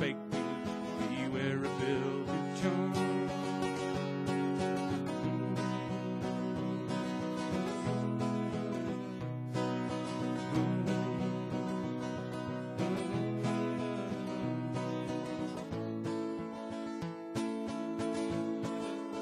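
Acoustic guitar strummed steadily in an instrumental passage of a country ballad, with no singing.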